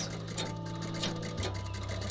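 Foot-treadle sewing machine running, with a rapid, even ticking.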